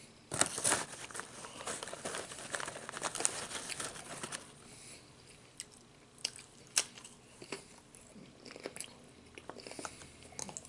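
Crunching and chewing of Nacho Cheese Doritos tortilla chips, mixed with crinkling of the chip bag as a hand goes into it. A dense run of crunching crackles fills the first four seconds or so, then sparser sharp crackles follow.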